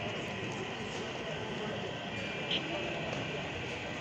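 Model train rolling past on the layout with a steady rumble, under indistinct background voices.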